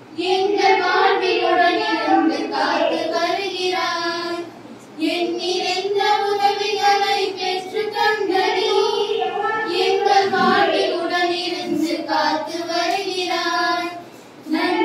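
A group of women's voices singing a slow song in unison, in long held phrases with a short pause for breath about four and a half seconds in.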